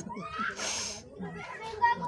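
A woman laughing, with other people's voices in the background, a breathy burst about half a second in and a brief louder peak near the end.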